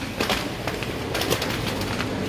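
Supermarket background noise: a steady low hum under a haze of shop noise, with scattered light clicks and knocks.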